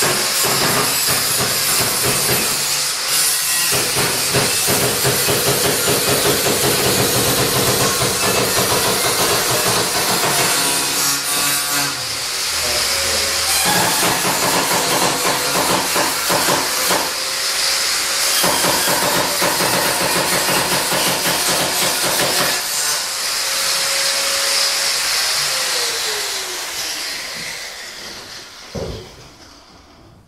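Electric angle grinder cutting into an old upright piano, running loud and steady under load with a harsh hiss. It eases briefly about twelve seconds in and winds down near the end as it is switched off.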